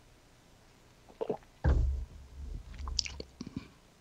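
Close-up mouth and throat noises from a hoarse man struggling with his voice: a few small wet clicks, then a loud, low, muffled burst into the microphone about one and a half seconds in, followed by more small clicks.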